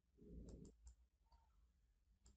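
Near silence broken by a few faint computer mouse clicks in the first second.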